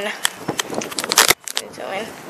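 Handling noise from a denim jacket being moved close to the microphone: a quick run of short clicks and rustles for the first second or so, a brief drop-out, then softer rustling.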